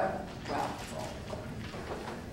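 A voice says "wow" in a hearing room, with a sharp knock right at the start and a few light hollow knocks over the room noise.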